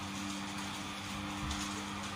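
Built-in blower fans of inflatable Halloween yard decorations running, a steady hum over a faint airy hiss.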